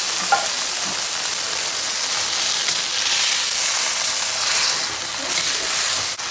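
Canned sardines in tomato sauce sizzling in a hot wok of oil and fried onion, a steady hiss, with one brief knock near the start.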